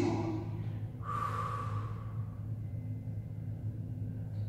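A woman's audible breath out about a second in, following a brief low voiced sound at the very start, over a steady low hum.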